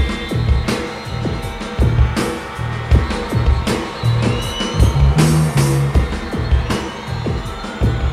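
Live rock band playing an instrumental passage with no vocals: a heavy, regular drum beat with electric guitar over it.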